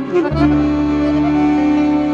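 A folk band plays an instrumental passage. A wind-instrument lead ends a quick, ornamented run and then holds one long note over a steady bass from about a third of a second in.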